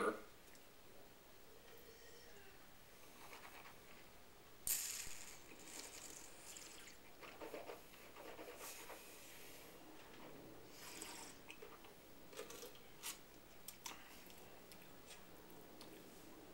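Mostly quiet wine tasting: a short hiss of air drawn through the mouth about five seconds in, then scattered soft clicks and small mouth and table noises.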